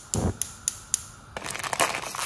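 A gas hob's igniter clicks four times at an even pace, about four a second. After that a plastic instant-noodle packet crinkles and rustles as hands work it open.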